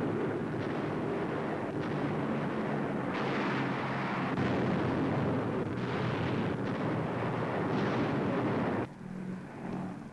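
Continuous rumbling roar of bomb explosions, swelling and easing in waves over a steady low drone. About nine seconds in, the roar drops away and leaves the drone.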